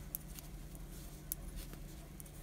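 Faint light clicks of knitting needles and soft rustle of yarn as stitches are purled, over a low steady hum.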